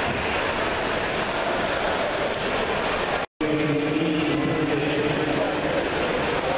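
Steady, echoing background noise of an indoor diving pool: water and the hum of people in a hard-walled hall. The sound cuts out for a moment a little after three seconds, then a sustained voice rises over the din for about two seconds.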